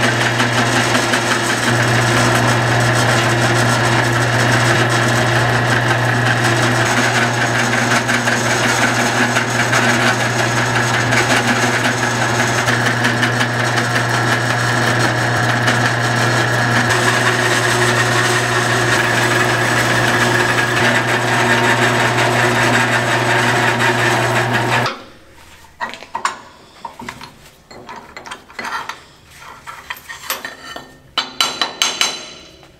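Benchtop mill-drill running steadily, its end mill cutting quarter-inch aluminum plate, with a steady low hum. The machine shuts off abruptly near the end, and a few scattered light knocks from hand work on the table follow.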